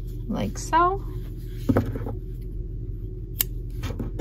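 A short rising hum of the voice near the start, then a sharp snip a little under two seconds in and a lighter click later: scissors trimming a woven-in cotton yarn tail.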